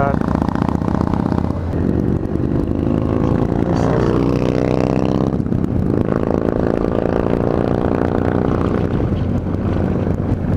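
Yamaha FJR1300 sport-touring motorcycle's inline-four engine running under way with wind rush, heard from the rider's seat; its pitch rises, dips briefly about five and a half seconds in, then rises again.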